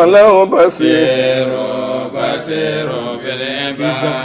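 A man's voice chanting a Quran recitation in Arabic, drawing out long, held, melodic notes. It starts suddenly and stays loud.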